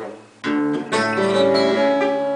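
Twelve-string acoustic guitar strummed between sung lines. After a short drop near the start, a chord is struck about half a second in and again about a second in, and it rings on.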